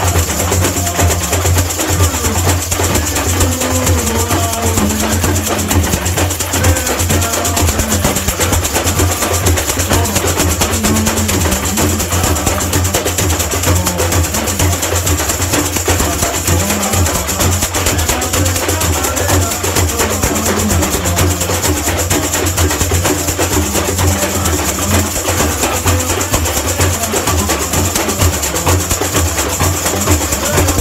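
Samba bateria playing together: a wall of metal chocalho shakers over surdo bass drums and tamborims keeping a steady samba rhythm.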